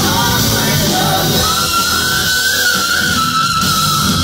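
Live metal band playing loudly: distorted electric guitar, drums and singing. A long high note is held through the second half.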